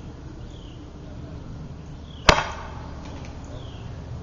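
Pneumatic antenna launcher firing once about two seconds in: a single sharp pop of released compressed air that trails off briefly, sending a projectile with fishing line over the treetops.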